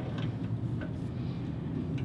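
A steady low hum with a few faint, light clicks of a ratchet wrench and bolt hardware being handled.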